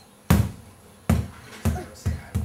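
A small ball bouncing on a hardwood floor: three sharp bounces, each slightly quieter than the one before.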